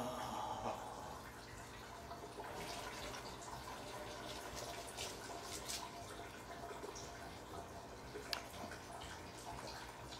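Faint, steady stream of liquid trickling into a toilet: a urination sound effect, with a few small clicks.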